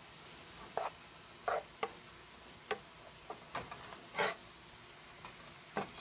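Broccoli rabe sizzling faintly in a sauté pan, with irregular short scrapes and clicks as tongs turn the greens, the longest scrape a little after four seconds.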